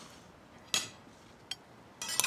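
Cutlery clinking against dishes at a dinner table: one sharp clink a little under a second in and a fainter tick about a second and a half in, over quiet room tone.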